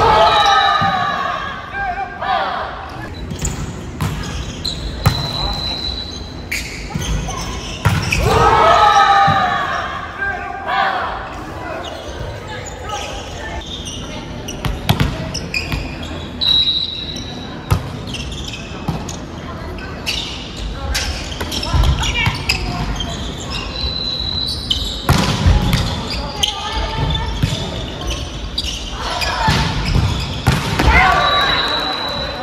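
Volleyball being played in a large, echoing gymnasium: the ball is struck again and again by hands and arms in short sharp hits, and players shout and call out during the rallies.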